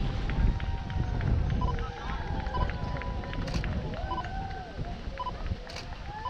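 Outdoor race-course ambience: distant, indistinct voices over a low wind rumble on the microphone, with a few short high beeps about once a second.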